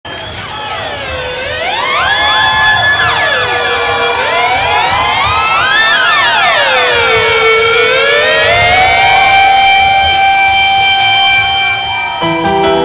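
Electronic intro drone: several sustained, overlapping tones sliding slowly up and down in pitch and crossing one another, siren-like, swelling over the first two seconds and then holding.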